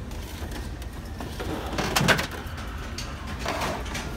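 Plastic VCR case being handled and shifted on a store shelf, with one sharp knock about halfway through and a softer scrape near the end, over a steady low hum.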